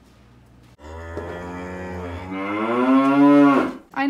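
A cow mooing: one long call of about three seconds that rises in pitch and then cuts off.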